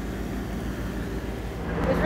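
Steady low engine rumble with outdoor street noise, as from a vehicle running nearby; a steady hum joins near the end.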